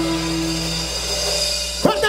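A huayno band's held closing chord dying away, with a sustained note and low bass tones fading. Near the end a voice breaks in with a short cry.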